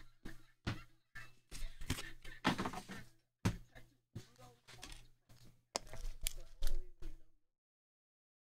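Irregular knocks, taps and rustles of trading cards, packs and a pen being handled on a table, over a steady low hum. The sound cuts off abruptly about seven seconds in.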